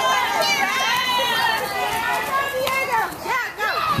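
Young children's voices calling out, several high voices overlapping, with a few short knocks in the second half.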